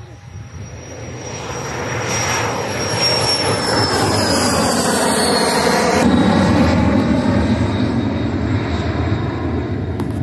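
Honda HA-420 HondaJet's twin turbofans at takeoff power as it climbs past, growing louder over the first few seconds, with a high whine that falls in pitch as the jet goes by.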